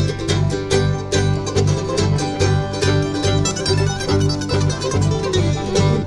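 Acoustic bluegrass band playing an instrumental intro at a steady beat: banjo, mandolin, acoustic guitar, fiddle and bass together.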